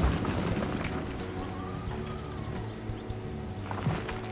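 Cartoon background music over sound effects of an excavator bucket breaking up road pavement, with a sharp hit at the start and another low thud near the end.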